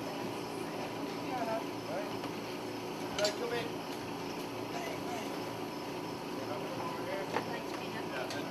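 Faint, indistinct chatter of several people over a steady background hum, with two short sharp clicks, about three seconds in and near the end.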